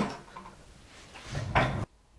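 Brief handling noise: a short rubbing knock, as from the laptop or its parts being moved, about one and a half seconds in, cut off abruptly.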